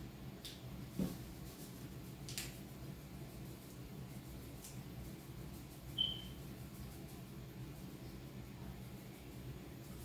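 Quiet room with a steady low hum, as drink-mix packets are handled and emptied into a plastic pitcher of water, giving a few faint rustles. There is a soft knock about a second in and one brief high squeak just after six seconds.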